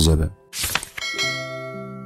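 Subscribe-button animation sound effect: a short swoosh about half a second in, then a bell-like notification chime. Its several notes come in one after another and keep ringing.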